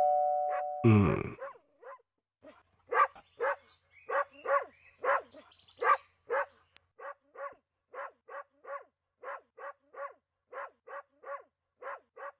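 A doorbell chime fades out at the start, then a dog barks over and over, about two barks a second, the barks becoming softer and a little quicker in the second half.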